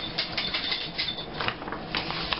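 Scrapbook pages of photos mounted on red paper being handled and turned over: an irregular crackling rustle of stiff paper with small clicks and taps.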